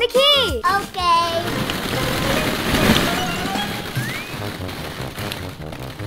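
Plastic ball-pit balls clattering and rustling as hands dig through them: a dense, continuous run of small hollow knocks.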